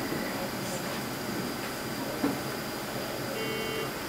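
Steady hiss of an infant incubator's air circulation and NICU equipment, with a thin high whine over it and a brief flat tone near the end.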